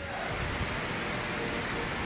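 Steady, even hiss of workshop background noise, with no distinct knocks or tool sounds.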